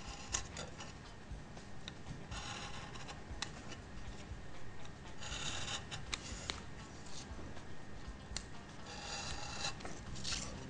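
Craft knife blade cutting through patterned paper around a chipboard letter on a glass cutting mat: a few short, scratchy rasping strokes with small ticks of the blade between them.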